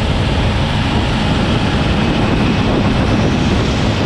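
Steady rushing of wind and road noise at road speed, picked up while travelling alongside a motorcycle.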